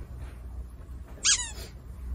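A single short high-pitched squeak a little over a second in, its pitch dropping at the end, over quiet room tone with a low hum.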